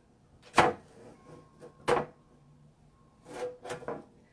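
Two sharp knocks about a second and a half apart, then a few softer rustling handling noises near the end, as a silkscreen stencil is lifted off a metal sign.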